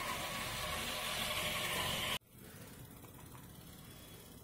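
Homemade floor-cleaning car running on a marble floor: its small DC motors, a high-speed 12 V motor spinning the foam-padded CD scrubber and the geared wheel motors, give a steady whir. The whir cuts off abruptly about two seconds in, leaving a much quieter steady hum.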